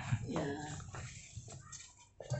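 A short pitched animal cry about half a second in, with its pitch curving.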